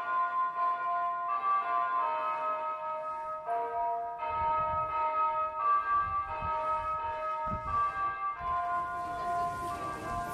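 Music of ringing, bell-like tones, several sounding together, moving through a slow sequence of notes that change about once a second.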